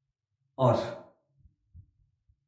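A man says one short word about half a second in; the rest is near silence.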